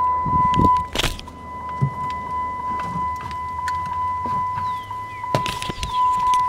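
A Dodge Ram's dash warning chime sounding as a steady high tone with the driver's door open, with a few clunks, the loudest about a second in, as the hood release is pulled.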